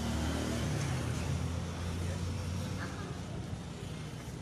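A motor vehicle's engine running with a steady low hum, with road noise around it.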